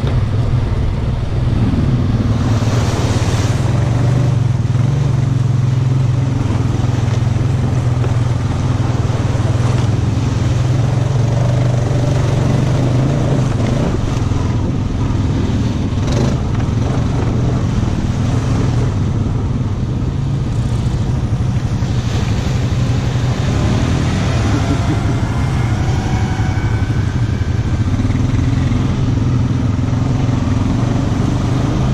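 ATV engine running steadily under way on a muddy trail, with a few brief louder rushes of noise over it.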